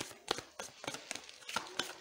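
Tarot cards being handled and leafed through by hand: an irregular run of light clicks and snaps, several a second, as the cards slide and flick against each other.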